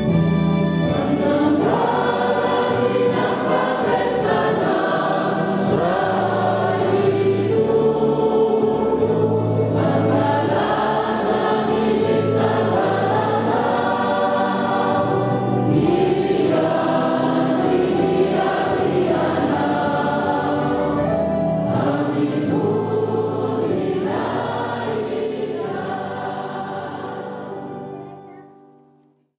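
Church choir singing a slow hymn over steady low sustained bass notes, fading out near the end.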